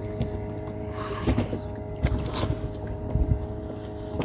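A steady mechanical hum runs throughout, with water splashing lightly against an inflatable dinghy and a few soft low thumps.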